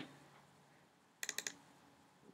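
A quick run of about five light clicks from a laptop keyboard a little past a second in, with near silence around it.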